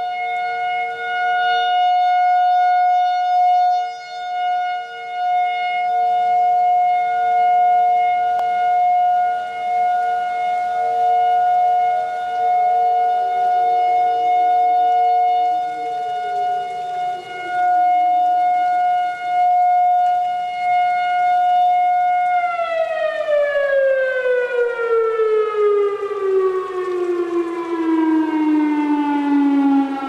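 Outdoor warning siren sounding a loud, steady tone with a weaker lower tone beneath it that drops out about halfway. About three-quarters of the way through it winds down, its pitch falling steadily as the rotor coasts to a stop.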